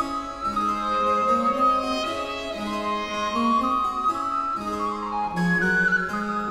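Early Baroque chamber ensemble playing a 17th-century Italian canzona: recorder and violin trading melody over viola da gamba and harpsichord continuo.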